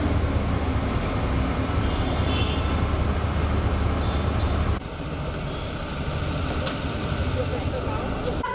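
Steady outdoor traffic rumble with a heavy low hum. About five seconds in it cuts abruptly to a quieter open-air background with faint voices.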